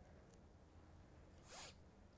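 Near silence with a faint steady background hum, broken once about a second and a half in by a brief swishing rustle.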